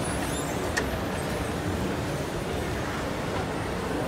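Steady background noise of an indoor shopping mall, with a single sharp click about three-quarters of a second in.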